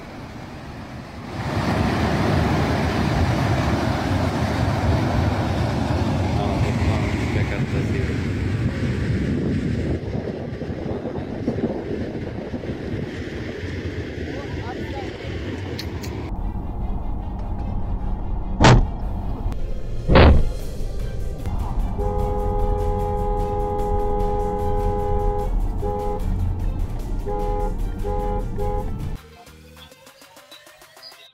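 Flash-flood mudflow rushing down a valley: a steady roar of churning muddy water and debris. About halfway through the roar gives way to a lower rumble, with two sharp knocks. A vehicle horn then sounds, held for a few seconds and then in short honks near the end.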